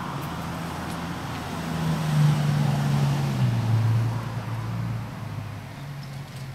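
A car passing on the street: engine hum and tyre noise swell to a peak about two seconds in, and the hum drops in pitch as it goes by.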